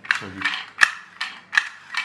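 Tonka friction-flywheel toy car pushed forward in quick repeated strokes across a table, its wheels driving the geared flywheel with a rasping whir on each stroke: the flywheel being built up to speed. About five strokes, roughly two and a half a second, the loudest a sharp click near the middle.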